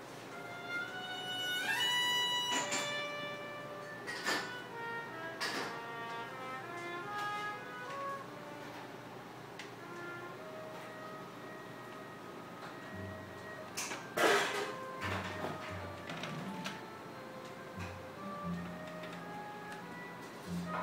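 Violin music playing from a vinyl record on a turntable, through a tube amplifier and loudspeakers, with a note sliding upward about two seconds in. A short sharp knock about fourteen seconds in is the loudest sound, and lower bass notes join from then on.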